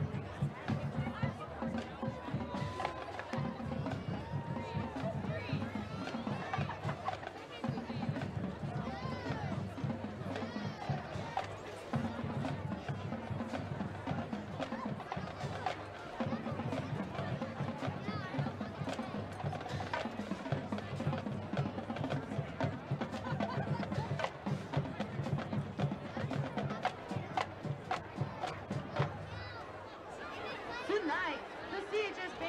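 High school marching band drumline playing a steady marching cadence: a continuous run of snare, rim-click and bass drum hits, over crowd chatter.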